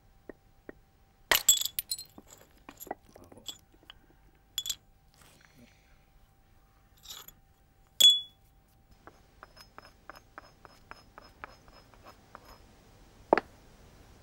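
Flint core being shaped with a handheld knapping hammer: sharp clicks and glassy clinks as small flakes are struck off. The loudest blow comes about eight seconds in and rings briefly. It is followed by a run of quick light taps and one more sharp knock near the end.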